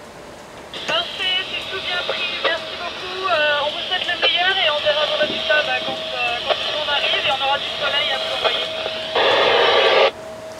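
A voice coming over a VHF marine radio's speaker, thin and hissy, with a faint steady tone beneath it; it is the other boat's reply. Near the end the transmission closes in a loud burst of static lasting about a second.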